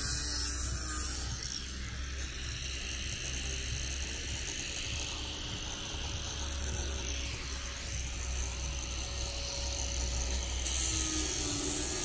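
Electric angle grinder fitted with a sanding attachment, running steadily with a thin whine as it sands wooden decking, over a steady low rumble.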